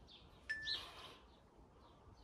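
Faint birdsong: short chirps, with one louder call about half a second in.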